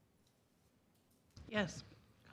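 Near-quiet meeting-room tone with a few faint clicks, then a short spoken "Yes" near the end.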